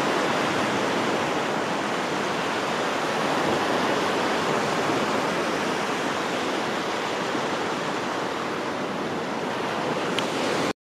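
Steady wash of surf breaking on a sandy beach, a continuous, gently surging rush of noise.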